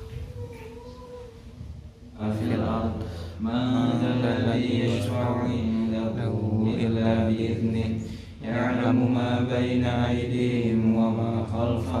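A man's voice chanting in Arabic with long, drawn-out held notes. It starts about two seconds in, pauses briefly near the eight-second mark, then carries on.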